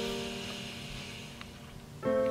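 Background piano music: a held chord slowly fading away.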